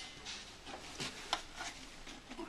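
Faint handling noise of a clear plastic vacuum filter attachment with a paper filter: a few brief light clicks and rubs of plastic being turned in the hands.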